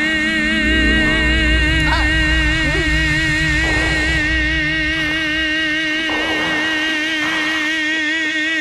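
A man's voice holding one long, loud sung note with a steady, wide vibrato, unbroken throughout, the drawn-out final note of a comic song. A low rumble sits under it for the first few seconds.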